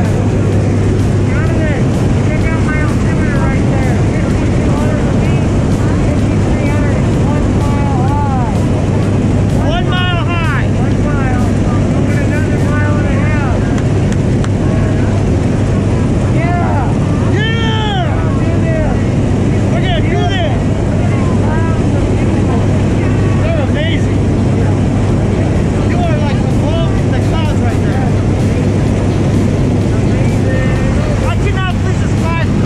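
Steady, loud drone of a propeller jump plane's engine heard inside the cabin in flight, with no change in pitch or level. Voices call out now and then over it, most clearly about a third of the way in and again past the middle.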